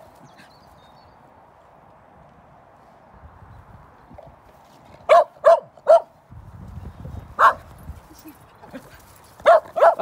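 Dog barking during play: three quick barks about five seconds in, a single bark a couple of seconds later and two more near the end.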